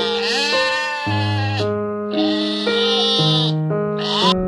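Sheep bleating in long, wavering calls, two in a row with a third starting near the end, over background music of slow, sustained chords.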